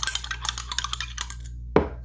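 Glass stir rod clinking rapidly against the inside of a glass beaker while mixing bentonite slurry into a wine sample. Near the end comes a single loud knock as the beaker is set down.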